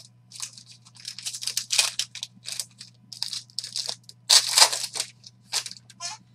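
Plastic wrapping on a trading card crinkling and tearing as hands unwrap it, in a run of irregular rustles with the loudest burst about four and a half seconds in. A faint steady low hum lies underneath.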